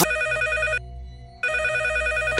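Red corded landline desk telephone ringing with an electronic, pulsing ring: two rings, the second starting about a second and a half in.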